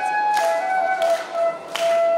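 Bansuri, a bamboo side-blown flute, played close to a microphone in a slow melody of held notes that step between pitches. A sharp tap-like accent comes about every two-thirds of a second.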